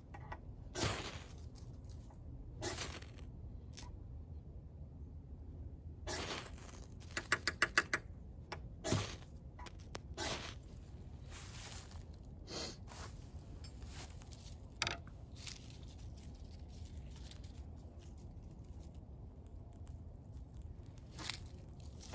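Dead leaves and pine needles rustling and crackling as they are handled and heaped into a tinder pile, in scattered short bursts, with a quick run of about half a dozen clicks around seven seconds in.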